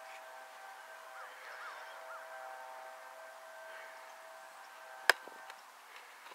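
A football smacking into a punter's hands as he catches a long snap: one sharp slap about five seconds in, over a faint steady hum.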